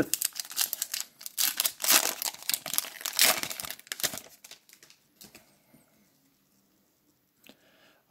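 Foil trading-card pack wrapper crinkling as it is torn open by hand: a dense run of crackles for the first four seconds or so, then only a few faint rustles and a small tick.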